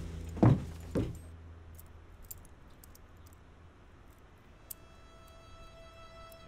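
Two heavy thuds about half a second apart, then a faint metallic clicking in near quiet, before soft sustained music notes come in near the end.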